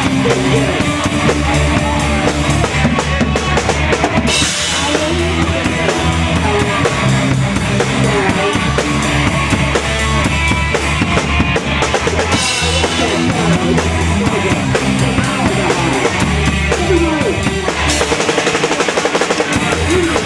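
Punk rock band playing live: bass and guitar over a fast drum-kit beat, loud and steady. Bright cymbal crashes come in about four seconds in, again around twelve seconds, and near the end.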